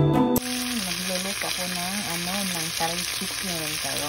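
Music cuts off suddenly a moment in. Then chopped onion, garlic, ginger and sliced red chilies sizzle steadily in hot oil in a pan.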